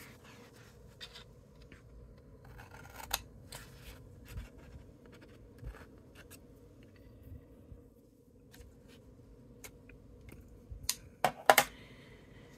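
Cardstock being handled and shifted, with scattered light rustles and taps, then a few sharp scissor snips cutting through the card near the end.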